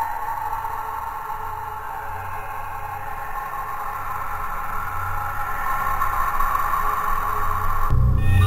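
Electronic music: sustained synthesized drone tones over a low hum, with no clear beat, slowly growing louder.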